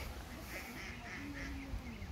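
A duck quacking, a quick run of about six calls.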